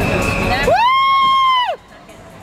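A spectator's long high-pitched "woo" cheer, rising in pitch, held for about a second, then falling away, over crowd noise. The sound drops off abruptly near the end.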